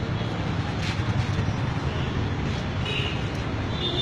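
Steady street traffic noise, led by a low engine rumble that holds even throughout.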